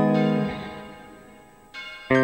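Clean electric guitar on a Cort guitar: a chord rings out and fades over about a second and a half, then a softer note sounds near the end.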